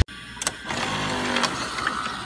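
Hissing static mixed with a mechanical whir, from a video-tape glitch effect, with a sharp click about half a second in.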